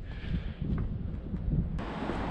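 Uneven low rumble of wind buffeting the microphone. About 1.75 s in it changes suddenly to a steadier hiss.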